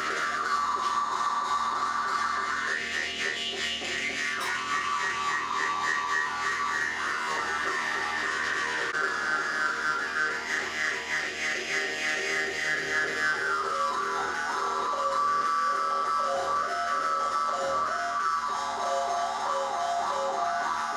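Female voices singing in Yakut olonkho style through microphones, long melodic lines that glide up and down with quivering ornaments, over steady held tones.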